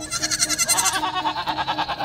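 Goat bleating: a long, quavering bleat.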